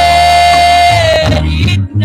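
Live church worship band: a singer holds one long note over a steady bass line, letting it go about a second and a half in, and a new phrase begins near the end.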